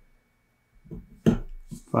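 Near silence, then from about a second in a few short clicks and knocks as a jumper wire is pushed into the header pins of an Arduino Uno.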